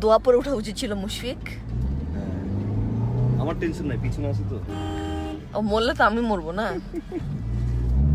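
A car horn sounds once about five seconds in, a steady note lasting under a second, over the low rumble of a car being driven, heard from inside the cabin.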